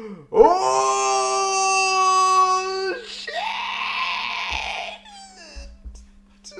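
An anime character's long, held yell, about two and a half seconds, rising in pitch as it starts. It is followed by a rougher scream of about two seconds, then a few short spoken sounds near the end.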